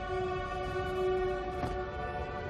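Horror film score holding a sustained chord of several steady tones over a low rumble.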